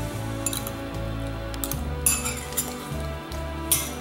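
Metal spoon clinking against a glass bowl, a few separate clinks about half a second in, around two seconds and near the end, over background music.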